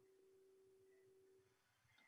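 Near silence in a pause between spoken phrases, with only a very faint steady tone that stops shortly before the end.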